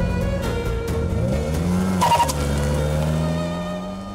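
Film soundtrack: music under a car sound effect, an engine sound rising in pitch, then a brief screech about two seconds in, followed by a steady low drone.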